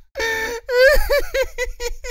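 A man laughing loudly and high-pitched: a long drawn-out cry that breaks into a rapid run of short laughs, several a second.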